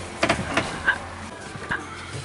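Handling sounds as a bed cushion is lifted off a wooden slatted bed frame: a few light knocks and rustles.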